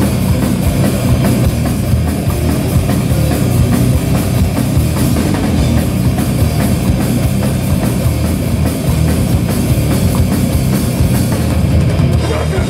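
A metalcore/hardcore band playing live and loud: heavy distorted guitars and bass over a fast, dense drum-kit beat.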